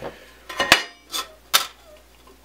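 Thin sheet-metal bracket cut from roof flashing clattering as it is picked up and handled: several sharp metallic clicks, the loudest about three quarters of a second in.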